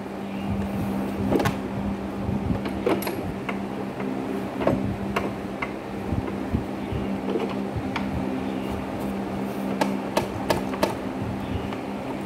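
Scattered light metal clicks and knocks from a homemade carriage clamp on a hollow-chisel mortiser, worked by hand to clamp a board. A steady low hum runs underneath.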